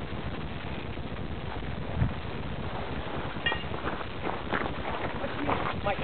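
Wind buffeting and rumbling on a body-worn camera's microphone, with a dull low thump of handling about two seconds in and a brief high beep about halfway through. Faint voices come in near the end.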